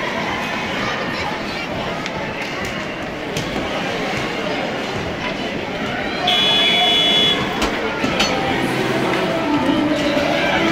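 A referee's whistle blown once, a shrill high tone lasting about a second, stopping play. Underneath runs the steady rink din of skates on ice and children and spectators calling out.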